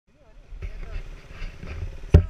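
Motorcycle engines running with a low, steady rumble under people's voices.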